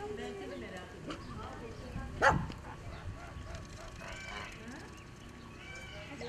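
Waterfowl calling in an enclosure, with one loud, sharp call a little past two seconds in, and quieter calls around it.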